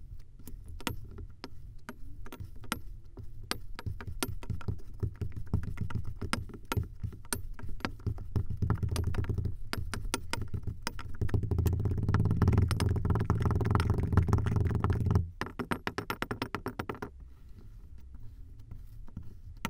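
Kinetic sand chunks crushed in a glass under a wooden muddler: a run of fine crackling and crunching that grows denser and louder, peaking about two-thirds of the way through. It cuts off suddenly, with a few sparse crackles after.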